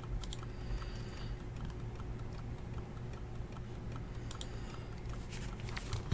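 Typing on a computer keyboard: soft, fairly even key clicks with a few sharper clicks, over a faint steady hum.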